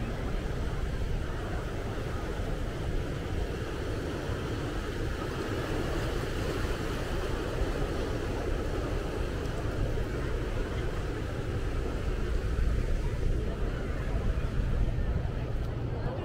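Steady rushing wash of ocean surf breaking on a rocky shore, with wind buffeting the microphone in a low rumble.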